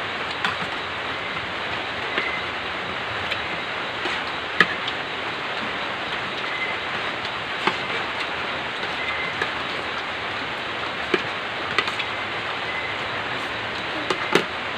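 Spoons clicking against plates now and then as people eat, the loudest about four and a half seconds in, over a steady even hiss.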